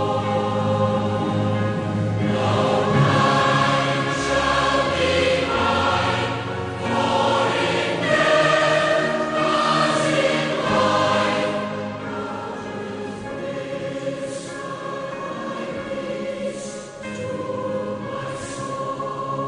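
A choir of voices singing a slow hymn in long, held notes, softer from about two-thirds of the way through.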